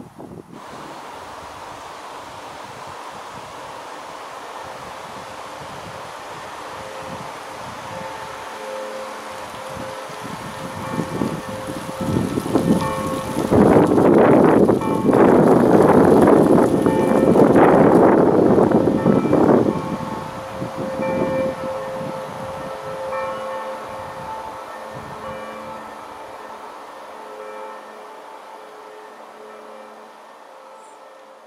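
A passing vehicle, its rushing noise swelling for several seconds in the middle and then fading away, over steady outdoor background noise.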